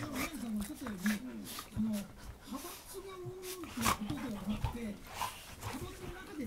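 Golden retrievers vocalizing with wavering whines and grumbles while play-wrestling, one longer drawn-out whine about three seconds in, with scattered scuffling knocks.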